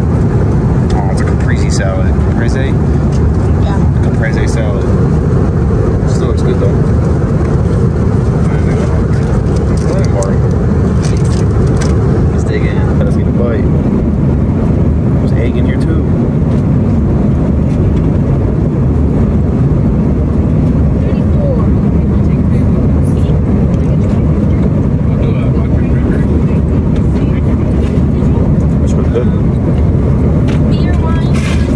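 Steady low rumble inside an Airbus A330neo's passenger cabin in cruise flight: engine and airflow noise that does not change.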